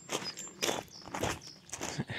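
Footsteps crunching on crushed gravel, about four even steps a little over half a second apart.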